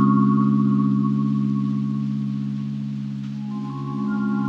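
Background music: a held chord of steady tones slowly fading, with a new note coming in near the end.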